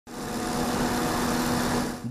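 Steady hum of machinery running in a rice bran mill: an even mechanical noise with a constant low tone, fading in at the start and stopping abruptly.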